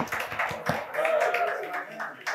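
A small group clapping, with the applause dying away in the first second, followed by faint voices.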